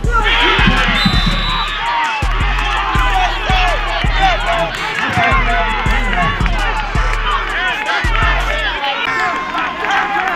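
Background music with a heavy, pulsing bass line, mixed with voices and crowd cheering. The bass stops about nine seconds in.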